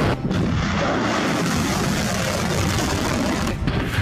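Loud, steady rumble of artillery fire and explosions, dipping briefly twice: about a quarter second in and just before the end.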